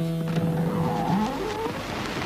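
A held music chord ends early on, then an engine revs up, its pitch rising over about half a second.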